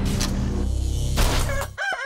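A rooster crowing as a logo sound effect, over a loud low rumble and hiss that cuts off sharply just before the end.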